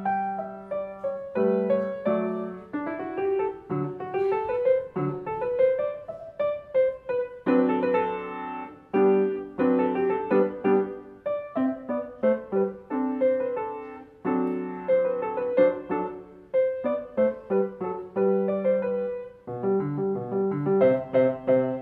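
Grand piano played solo: a quick-moving piece of many short, separate notes, with a run of rising notes a few seconds in.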